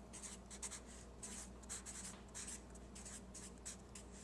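Felt-tip marker writing letters on a sheet of paper: a quick run of short, faint strokes, one after another.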